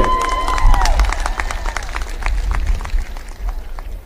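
A crowd clapping, with many separate irregular claps, over a steady low rumble. The PA echo of the last spoken word fades out in the first second.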